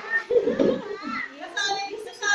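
Small children's voices chattering and calling, with some adult speech mixed in.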